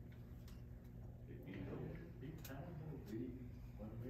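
Quiet, indistinct talking that starts about a second and a half in, over a steady low room hum, with a few faint clicks and ticks.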